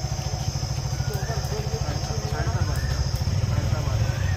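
Motorcycle engine idling steadily close by, with people talking faintly over it.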